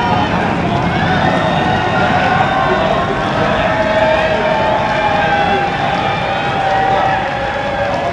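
Football supporters chanting together in the stand, a loud, unbroken mass of voices with long held notes in the middle.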